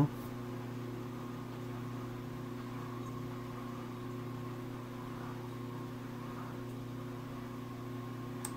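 Steady low electrical hum made of several even tones, unchanging throughout.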